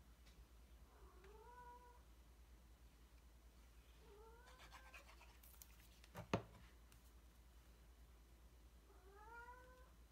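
A domestic cat meowing faintly three times, each call rising in pitch and then holding, complaining for attention. A single sharp knock about six seconds in.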